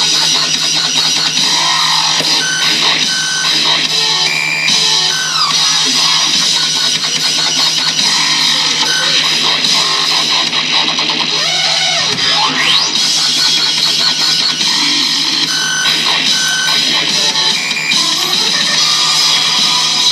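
Loud electronic dance music with a dense, noisy texture, short held synth tones and sliding pitch sweeps, including one rising sweep about two-thirds of the way through.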